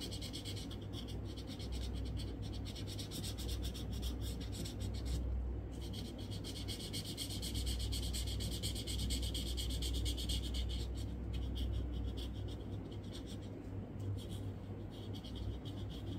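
Red felt-tip sketch pen scratching rapidly back and forth on paper as it colours in, with a brief pause about five seconds in and patchier strokes after about eleven seconds. A low steady hum sits underneath.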